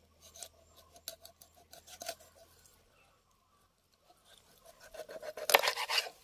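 A knife blade scraping the scales and skin of a whole catla fish on a wooden board. A few short, scattered scrapes come first, then a quiet gap, then a quick run of louder scrapes near the end.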